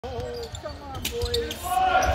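A basketball bouncing on a hardwood gym floor during a game, with sharp thuds about a second in and voices in the background.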